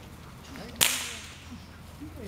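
A single sharp whip crack about a second in, with a short ringing tail, from the decoy's training whip during protection work with a German shepherd.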